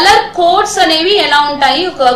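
A woman speaking steadily in a lecture, Telugu mixed with English technical terms.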